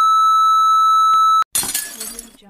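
Test-card tone: a single steady high beep that cuts off suddenly about a second and a half in, followed at once by a short noisy crash that fades away.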